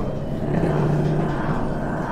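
A small wild cat's low, drawn-out call, with a steady deep tone swelling for about a second in the middle.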